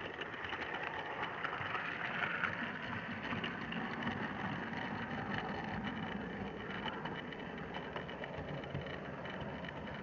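Model railway train running along the track, heard from a small camera riding on it: a steady rolling rumble and whir with many small clicks.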